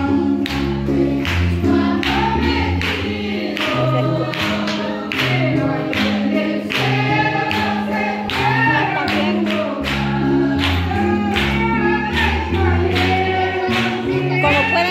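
Gospel worship music: a group singing over a bass line that steps from note to note and a steady beat.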